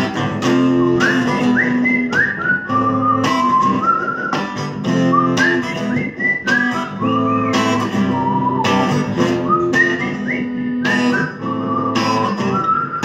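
Acoustic guitar strummed in a steady rhythm, with a whistled melody over it whose notes swoop up into each phrase.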